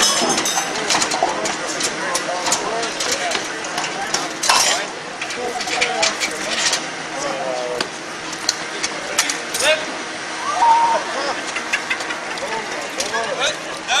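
Irregular metal clanks and knocks from hand tools and parts of a 1951 Jeep being rapidly dismantled, one loud knock about four and a half seconds in, over crowd chatter and shouts.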